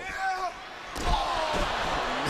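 A heavy thud on the wrestling ring canvas about a second in, followed by the arena crowd's noise swelling.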